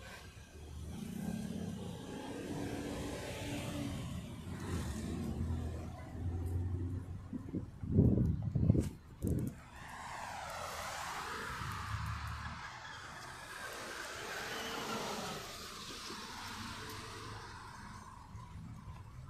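Street traffic: a motor vehicle running and going by close to the microphone, with a swelling and fading rush in the second half. A few loud bumps about halfway through come from the phone being handled.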